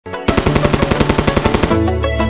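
Rapid machine-gun fire sound effect, about a dozen shots a second, over a music intro. Near the end the firing stops and a deep held bass note and melody of a Gujarati chill-out DJ remix come in.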